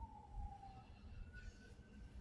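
A faint siren wailing: one thin tone slides slowly down in pitch through the first second, then comes back higher and holds.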